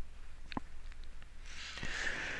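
A pause in a man's talking: a few faint mouth clicks, then a soft breath drawn in near the end.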